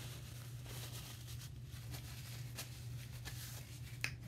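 Paper napkin rustling and crinkling in short, irregular strokes as hands are wiped clean, over a steady low electrical hum.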